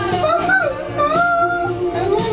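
Pop song playing: a sung melody holding long, wavering notes over the band.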